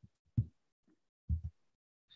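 Two soft, dull low thumps about a second apart, with quiet between them.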